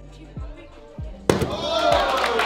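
Hip-hop backing music with a deep kick drum. About a second and a quarter in, a sudden loud thud as a body lands on the judo mat, and at once the crowd cheers and shouts.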